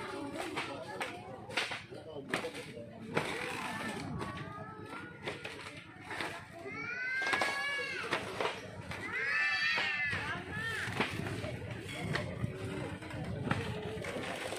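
Footsteps knocking on a bamboo-slat footbridge, with children's voices in the background rising to two high calls in the second half.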